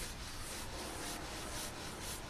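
Pencil scratching on sketchbook paper, a run of short strokes as a dragon's body outline is drawn.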